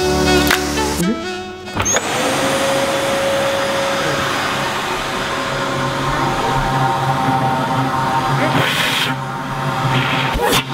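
Nilfisk canister vacuum cleaner switched on about two seconds in, its motor whining up to speed and then running steadily as it draws air through the home-made plastic pipe rig. A brief louder rush of air comes near the end. Background music plays at the start.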